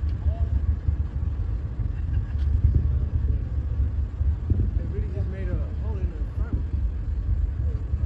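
A steady low rumble, with faint voices talking now and then.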